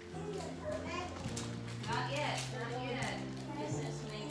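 Children's voices and chatter over background music with long held low notes.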